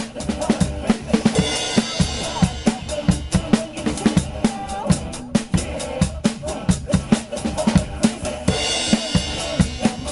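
Acoustic drum kit playing a steady rock beat of snare and bass drum over the song's backing recording, with cymbal crashes ringing out about a second in and again near the end.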